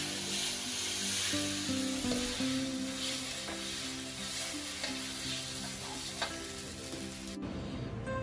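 Hot stir-fried rice noodles sizzling in a wok as they are served out, with a few light knocks of the utensil. The sizzle cuts off suddenly near the end.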